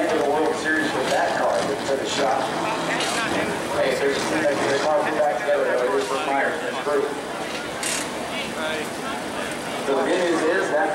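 Indistinct voices talking throughout, over a steady background noise.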